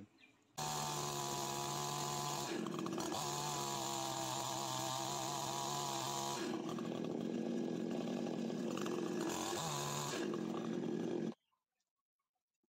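Ogawa two-stroke chainsaw cutting across a log, its engine running steadily under load with a few shifts in pitch. The sound starts suddenly about half a second in and stops suddenly about a second before the end.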